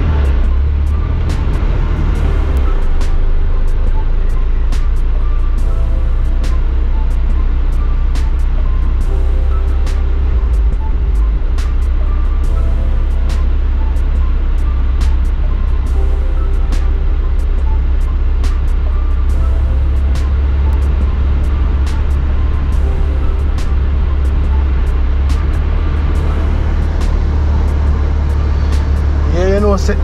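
Steady low rumble of street traffic, with music playing over it in short held notes.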